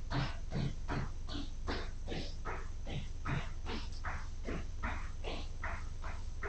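Hard, rhythmic breathing of someone exercising, about two to three strokes a second, over a steady low hum.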